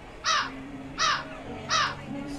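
A crow cawing three times, about 0.7 s apart, each caw short, harsh and dropping in pitch.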